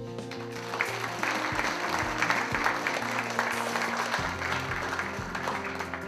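An audience applauding over instrumental background music: the clapping swells about a second in and dies away near the end, while the music continues beneath.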